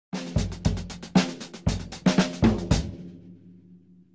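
Short logo jingle: a quick run of about eight drum-kit hits over a low bass note for the first three seconds, then a held low note fading away.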